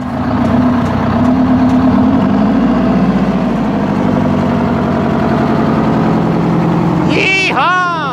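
Big Walter RDUL truck engine running loud and steady, its pitch dipping and recovering about two to three seconds in. It is running on seven cylinders because the fuel lines to one injector were left off. A whooping shout near the end.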